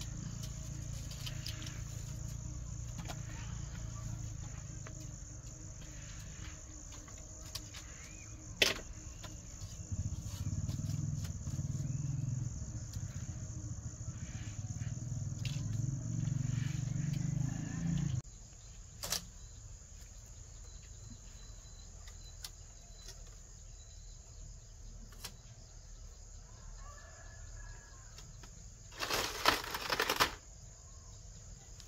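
Insects chirring steadily in the background, with a few sharp knocks from bamboo being handled, most of them bunched together near the end. A low rumble runs under the first half and cuts off abruptly a little past the middle.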